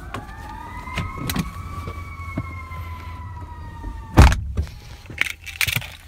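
A high, wavering tone that rises a little and then slowly falls for about four seconds, then a single heavy thump of the pickup's door shutting, followed by a few light clicks.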